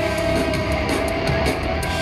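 Metalcore band music: distorted electric guitars with drums, playing steadily.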